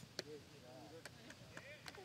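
Near silence: faint outdoor ambience with a few faint, distant voice-like sounds and a couple of soft clicks.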